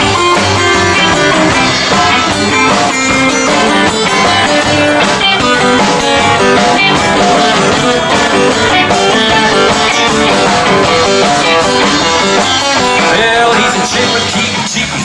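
Live hillbilly boogie band playing an instrumental break without vocals: electric guitar and steel guitar over acoustic rhythm guitar and upright bass.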